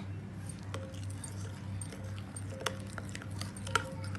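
A spoon stirring a thick curd-and-spice marinade in a cut-glass bowl, with a few sharp clinks of the spoon against the glass over a steady low hum.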